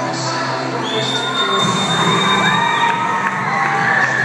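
A crowd of young children cheering and shouting over background music, with one long high-pitched cry held for about two seconds; the cheering swells about a second and a half in.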